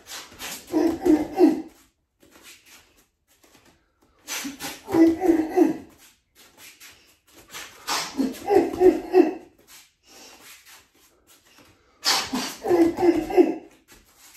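A man's sharp, breathy grunts and exhalations with each strike of a knife-fighting combination. They come as four rounds about four seconds apart, each a quick run of several short grunts.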